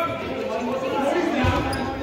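Indistinct voices in a gymnasium, with a single basketball bounce on the hardwood floor about one and a half seconds in.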